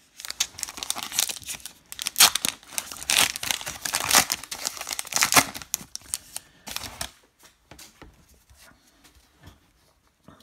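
Wrapper of a 2022 Topps Archives hobby pack of baseball cards being torn open and crinkled: a run of sharp tearing and crackling for about seven seconds, then only faint, sparse rustles.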